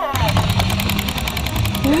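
Battery-powered Peppa Pig Magical Parade toy train driving across a tabletop: a fast, even plastic clatter from its motor and gears, about fifteen clicks a second, over a low hum.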